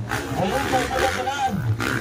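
Motocross dirt bike engines revving hard on the track, the pitch rising and falling with the throttle, and one rev dropping away near the end.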